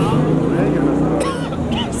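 Double-decker bus's diesel engine running as the bus pulls slowly past close by, a steady low hum, with people talking around it.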